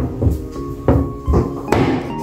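Meat cleaver chopping the toenails off raw chicken feet on a wooden chopping block: several sharp chops about half a second apart, cutting through the toe and its tendon. Background music plays underneath.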